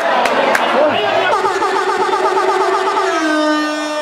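Amplified sound from a rock band on stage: a pitched, held note that wavers in quick repeated glides, then settles to a steady lower pitch about three seconds in.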